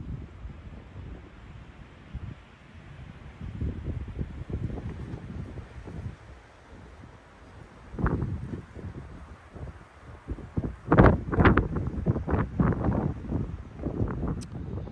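Wind buffeting the microphone outdoors, an uneven low rumble that comes in stronger gusts about eight seconds in and again a few seconds before the end.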